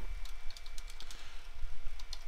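Typing on a computer keyboard: a run of light, irregular key clicks.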